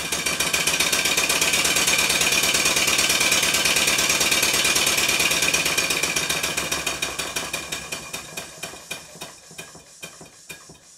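Stuart 5A model steam engine running fast on compressed air: a rapid, even stream of exhaust beats with a bright hiss. It is being run to judge its valve timing after an adjustment of the eccentric. About six seconds in it begins to slow and fade, the beats spreading out.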